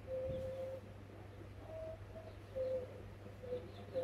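Baby macaques giving thin, high coo calls: one long coo at the start, then several shorter ones.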